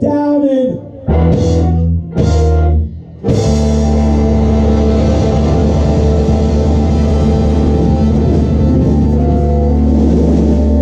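Live rock band of electric bass, electric guitar, saxophone and drum kit. After a brief voice, it plays two short loud hits about a second apart, then goes into steady continuous playing from about three seconds in.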